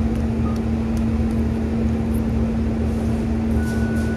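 A steady low mechanical hum with one strong pitch runs throughout and is the loudest sound. Faint sharp clicks of someone chewing a bite of a sub sandwich sit over it, and a brief high beep sounds near the end.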